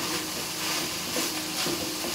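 Minced roe deer meat sizzling in olive oil in a frying pan as it is stirred with a wooden spoon: a steady hiss of the meat browning.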